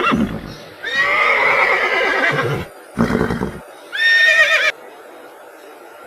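A horse neighing: a long, wavering whinny about a second in, then a short snort and a shorter high whinny.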